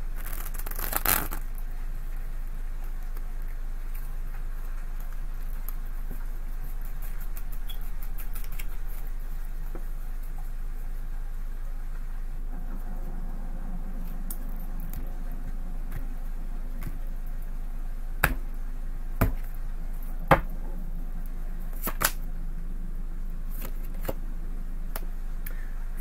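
A new, stiff tarot deck being shuffled by hand, with soft card rustling and a quick run of fine clicks at the start. Several separate sharp snaps of cards come later, over a steady low hum.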